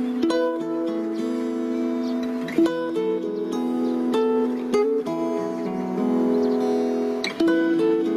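Acoustic guitar music without voice: strummed chords ring on and change every second or so, with a harder stroke about two and a half seconds in and again near the end.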